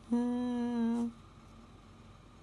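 A woman's drawn-out hesitation sound, "uhhh", held at one steady pitch for about a second.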